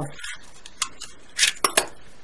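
Clear plastic spool of beading wire being handled as the wire end is put back on it: about four short, sharp plastic clicks and ticks, most of them close together in the second half.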